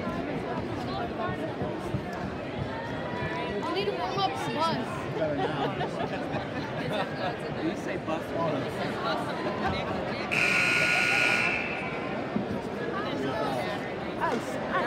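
Crowd chatter in a gymnasium. Near the end a gym scoreboard buzzer sounds once, a steady blare lasting about a second and a half.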